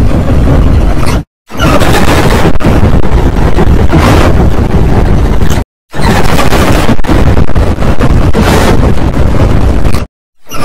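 Heavily distorted, clipped audio of a logo effects edit: a loud, harsh noisy roar that cuts to silence for a moment about a second and a half in and again near six seconds.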